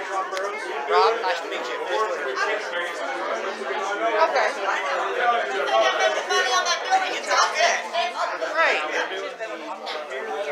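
Many people talking at once: indistinct overlapping chatter of a roomful of voices, with no single clear speaker.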